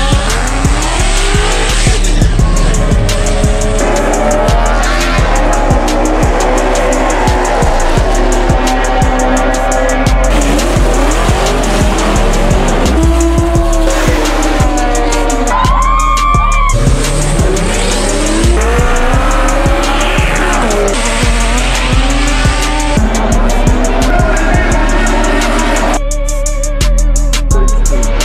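Drag race cars revving and accelerating hard, their engine pitch repeatedly rising and falling, with tyre squeal, mixed with background music that has a steady beat.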